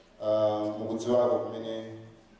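A man's voice through a microphone, drawing out one long, level-pitched phrase in a chanted, intoning delivery of preaching or prayer. It starts just after a brief pause and fades away near the end.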